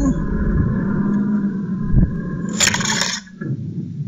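Electric-converted David Brown 880 tractor driving along a farm track: a steady whine and rumble from its electric drive and gears, with a knock about two seconds in and a brief metallic clatter near three seconds, after which the sound drops away.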